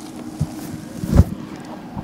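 Wind buffeting an outdoor microphone: a steady rush with low rumbling gusts, the strongest about a second in.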